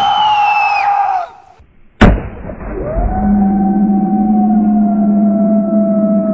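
A woman screaming shrilly for about a second just after the airbag's bang. After a sharp click about two seconds in, a long, steady, lower scream is held to the end, slowly falling in pitch.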